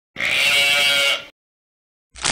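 A single wavering, bleat-like cry lasting about a second, starting and stopping abruptly.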